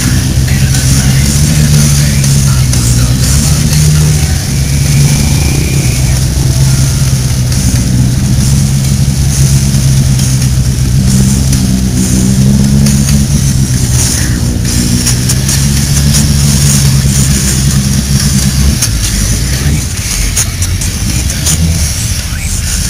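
Off-road vehicle engine idling steadily with small wobbles in pitch, its note fading out near the end.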